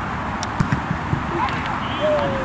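Outdoor ambience of a football match on artificial turf: a steady rush of background noise with a few sharp knocks from play, and brief shouts of players' voices.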